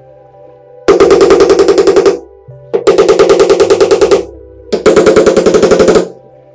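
Three bursts of loud, rapid rattling, about a dozen pulses a second, each lasting a little over a second, over quieter background music.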